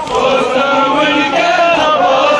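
A crowd of men chanting a Kashmiri noha, a Shia mourning lament, many voices together.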